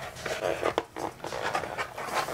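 Fingers rubbing and pressing an elastic strap against a plastic armour shoulder bell: short, irregular scuffing and handling sounds.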